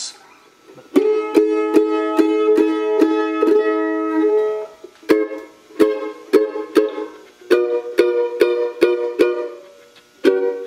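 A rebuilt and revoiced 1949 Gibson F12 mandolin being played. First a chord is picked in quick repeated strokes, about four a second, for roughly three seconds. Then, after a brief break, it plays short clipped rhythmic chop chords.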